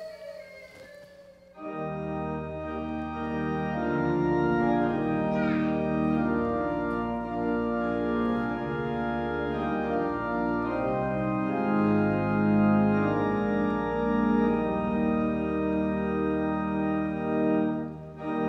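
Church organ playing the introduction to a psalter hymn tune in held chords with moving notes. It starts about a second and a half in and breaks off briefly at the very end, before the singing.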